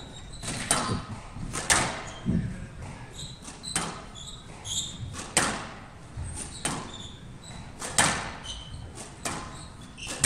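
Squash rally: the ball cracks off the racket and the walls in sharp hits about once every second or so. Short high squeaks come between the hits.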